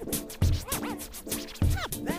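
Electronic techno-jazz track made in Reason: a kick drum about every 1.2 s, fast hi-hat ticks, held synth tones and quick swooping sounds that rise and fall in pitch.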